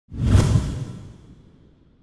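A whoosh sound effect with a deep low end, swelling quickly and fading away over about a second and a half.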